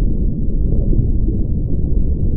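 Steady, deep underwater rumble: a muffled, low-pitched noise with nothing high in it.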